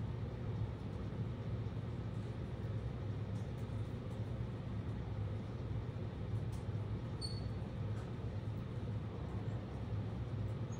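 Steady low hum with a faint hiss: classroom room tone. One brief high-pitched chirp sounds about seven seconds in.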